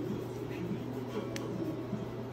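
Steady low hum, with one sharp click a little past halfway through.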